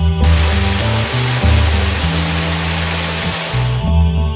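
Background music with the steady rushing of a small creek waterfall spilling over rocks laid over it; the water sound comes in suddenly just after the start and cuts off suddenly just before the end.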